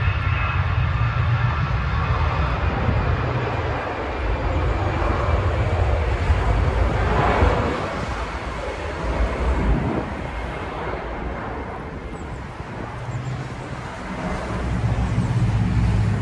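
Airliner taking off: a continuous engine roar with a faint whine, strongest around the middle and fading in the second half.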